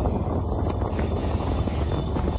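Touring motorcycle engine running steadily at highway cruising speed, heard from the rider's seat with wind rushing past the microphone.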